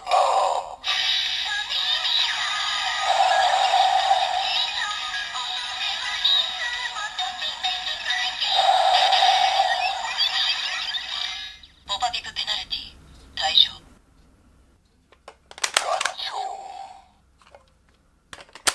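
Kamen Rider Ex-Aid DX Buggle Driver toy playing its electronic transformation music and voice calls through its small built-in speaker. The music cuts off about two-thirds of the way in, followed by a few short separate sound bursts.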